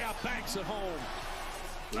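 Basketball game audio from a TV broadcast: a ball bouncing on the court with arena noise, and the commentator's voice faintly under it.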